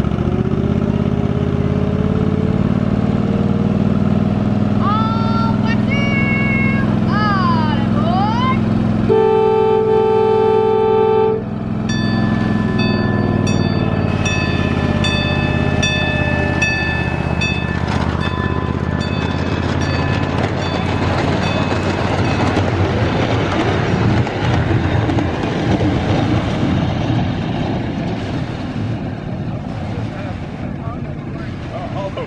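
Ride-on miniature train locomotive running with a steady low engine drone, then sounding one long horn blast of about two seconds, about nine seconds in. A bell then rings with regular strokes for several seconds as the train gets under way, and the engine and running noise carry on to the end.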